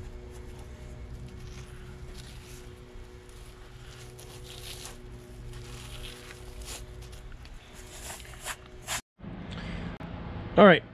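Gloved hands pressing and smearing quick-setting patching cement into holes in a concrete wall: faint scrapes and scuffs over a steady low hum.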